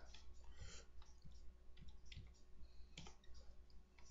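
Faint, scattered clicks of a computer keyboard and mouse while an object is nudged into place in a drawing program, over a low steady hum.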